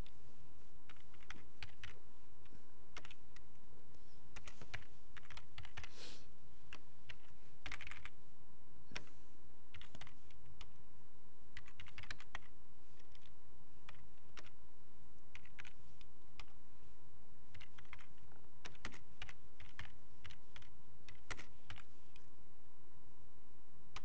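Typing on a computer keyboard: irregular runs of keystrokes with short pauses between them, over a faint steady hum.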